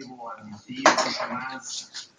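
An indistinct voice with some light clinking in the background.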